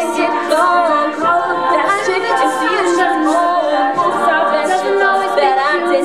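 All-female a cappella group singing: a lead voice over layered backing harmonies from many voices, with vocal percussion keeping the beat.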